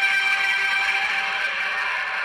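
Film soundtrack played through a TV: a steady hissing wash with a few faint held tones, thinning slightly towards the end.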